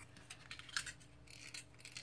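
Faint, irregular clicks of a snap-off utility knife's blade being slid out of its plastic handle.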